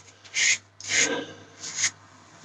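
Double-edge safety razor with a Treet blade scraping through about four days of beard stubble under shaving lather: three short, raspy strokes down the cheek.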